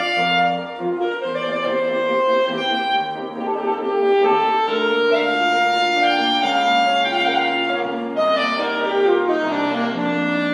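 Saxophone playing a classical melody of held, connected notes, accompanied by a grand piano.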